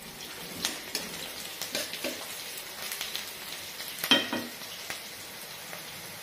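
Sliced onions sizzling in hot oil in a kadhai, with a spatula scraping and knocking against the pan now and then; the loudest knocks come about four seconds in.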